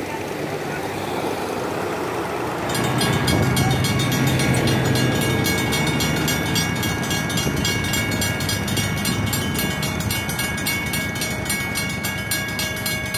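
Federal Signal railroad crossing bells start ringing about three seconds in, a rapid, steady run of bell strikes over passing road traffic. The crossing signals are activating to warn of an approaching rail vehicle.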